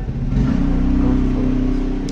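A motor runs with a steady, loud low hum, growing a little louder about a third of a second in.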